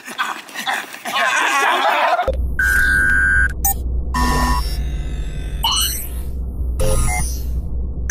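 A group of men yelling and whooping excitedly, cut off about two seconds in by an electronic logo sting: a steady deep bass drone under held synth tones, a rising sweep and short beeps.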